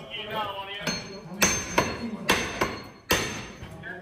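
Blows on a wooden office door as police pound on or force it: about six sharp bangs over two seconds, starting about a second in.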